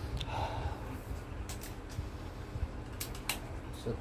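Light handling noises of small gear: a short rattle of a pellet tin near the start, then a few sharp clicks, two close together near the end, as the air rifle is handled.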